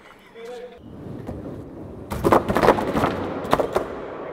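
Eight-wheel skateboard rolling on a concrete floor with a low rumble, then clattering with a run of sharp knocks in the second half as it hits the stair steps.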